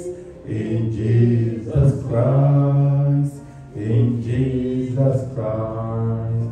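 A man singing a slow worship chorus through a microphone and PA, in long held notes broken into short phrases with brief pauses between them.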